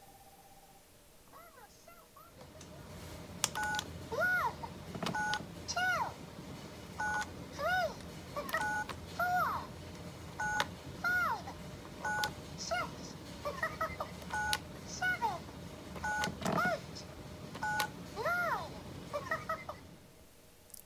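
Electronic toy phone keypad being pressed: each press gives a two-tone dial beep, then a short high-pitched recorded character voice, which here calls out the number. This repeats over a dozen times, about once a second, from about three seconds in.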